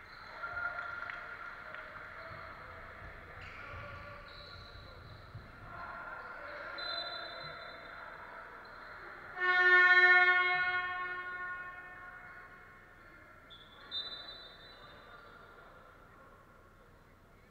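Basketball hall buzzer sounding loudly once about nine and a half seconds in, a single harsh pitched tone that rings out and fades over about two seconds in the hall. A referee's whistle comes shortly before it, another short one near the end, and there is general court and crowd noise throughout.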